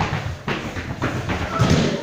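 Running footsteps of young children sprinting across a hall floor, a quick run of dull thuds.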